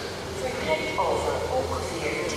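Indistinct voices in a large train station concourse, over a steady low hum.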